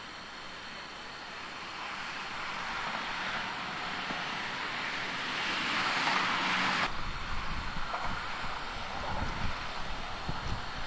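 Highway traffic noise swelling as a vehicle approaches, cutting off suddenly about seven seconds in. After the cut comes a lower, uneven rumble of wind on the microphone and traffic.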